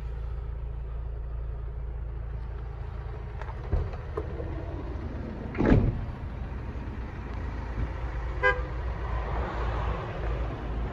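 A vehicle engine idling: a steady low rumble. There is a sharp knock a little before halfway, a brief loud clunk just past halfway that is the loudest moment, and a short pitched beep near the end.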